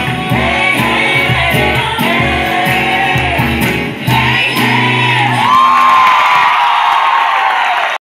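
Live pop band and singers playing in a large hall, heard from the audience. The bass and beat stop about five and a half seconds in, leaving voices holding a long note.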